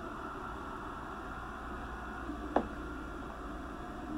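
Steady background hiss and low hum of a home voice recording, with one short click about two and a half seconds in.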